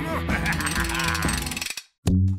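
A rapid, even mechanical clicking, like a ratchet or gears turning, over background music; it cuts off abruptly shortly before the end.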